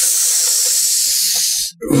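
A man's long exasperated sigh blown close into a headset microphone: a steady breathy hiss lasting about a second and a half that stops abruptly, just before he speaks.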